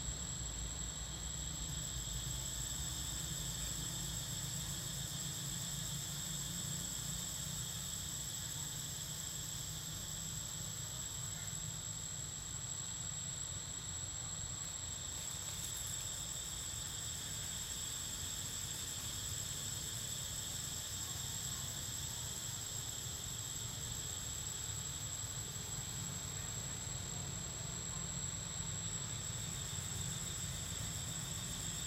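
Steady insect chorus: a continuous high-pitched whine with a fainter buzz below it, unchanging throughout, over a low steady rumble.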